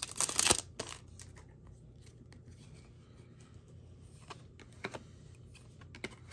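Foil wrapper of a Topps Chrome trading-card pack tearing and crinkling open in a short loud burst at the start, followed by a few faint clicks and rustles as the cards are handled.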